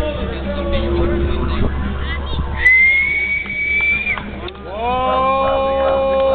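A long whistled note held for about a second and a half, rising slightly, then a voice holding a long note that starts to waver near the end, over a steady low rumble.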